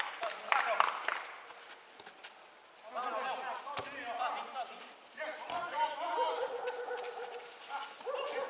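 Indistinct voices calling out during a football game, faint and in several stretches, with one sharp knock about four seconds in.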